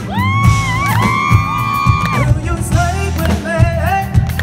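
Live pop band: a male voice slides up into two long held notes, then sings shorter phrases, over acoustic guitar, drum kit and keyboard.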